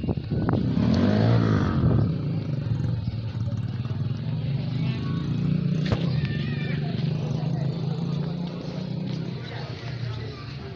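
A motor engine running, loudest in the first two seconds, then a steady low hum that fades slightly near the end.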